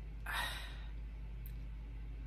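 A short breathy sigh from a boy, about half a second long near the start, then a steady low hum.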